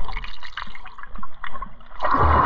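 Lake water splashing and dripping close to the microphone, in short irregular splashes.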